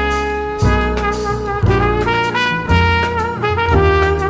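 Jazz quartet playing: a trumpet carries a melody with bent notes over piano chords and double bass, the harmony changing about once a second.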